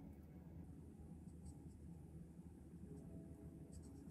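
Faint scratching of a black paint-marker tip drawing an outline on a smooth stone, a few soft strokes over low room hum.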